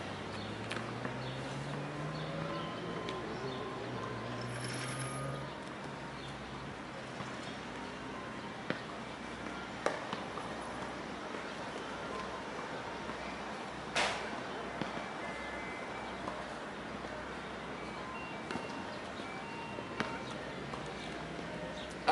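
Gymnastic ring straps being adjusted, with a few sharp clicks from the strap buckles, the loudest about fourteen seconds in, over a steady background hiss. A low hum rises in pitch over the first five seconds, then levels off and fades.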